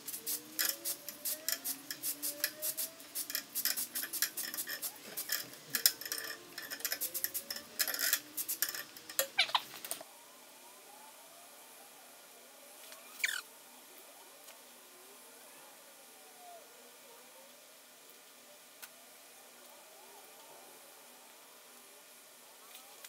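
Fast irregular clicking, several clicks a second, for about ten seconds, then faint room tone with one short falling squeak.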